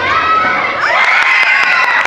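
Children in a school gym screaming and cheering, several long high-pitched screams overlapping, one rising in pitch about a second in.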